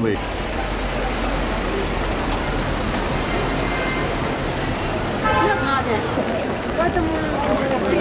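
Steady rain on wet paving, a constant even hiss, with passers-by's voices breaking in briefly about two-thirds of the way through.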